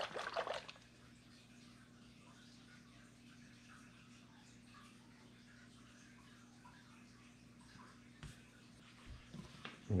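A plastic bottle of API nitrate test reagent being shaken hard, its liquid sloshing and rattling; the shaking stops in the first second. After that there is a faint, steady low hum with a couple of faint ticks near the end.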